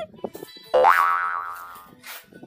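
A cartoon-style "boing" sound effect: a single loud springy note about three-quarters of a second in that swoops sharply up in pitch and then dies away over about a second.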